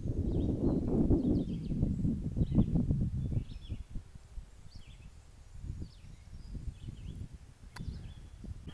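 Wind buffeting the phone's microphone, loudest in the first few seconds and then easing, with faint bird chirps scattered through.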